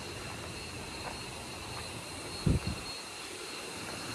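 Steady rushing outdoor noise with a brief low thump about two and a half seconds in.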